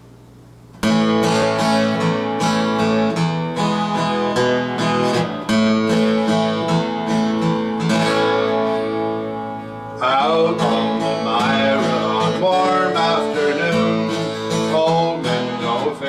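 Acoustic guitar strummed and picked as a song intro, starting suddenly about a second in. A man's voice joins singing over the guitar about ten seconds in.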